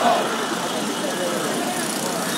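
Street crowd noise: people talking indistinctly over a steady rumble of road traffic.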